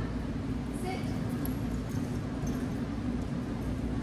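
A steady low hum fills the room, with a short spoken word in a woman's voice about a second in.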